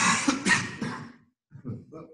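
A man coughing: a loud run of three coughs, then a few quieter coughs near the end.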